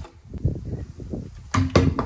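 A large rolled paper poster being handled and pulled open: rustling and crinkling of stiff paper, with two sharp crackles about one and a half seconds in, over a low rumble of wind on the microphone.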